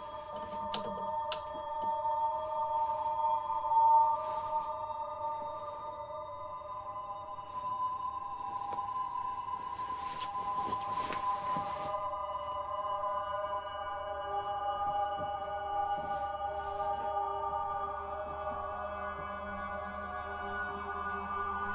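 Eerie drone-like film score: several long held tones layered together, slowly shifting in pitch, with a few faint rustles near the start and about ten seconds in.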